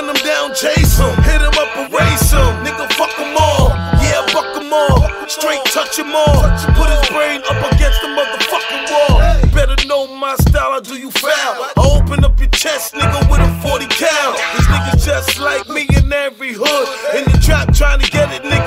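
Hip hop track: rapped vocals over a beat with heavy, recurring bass-drum kicks.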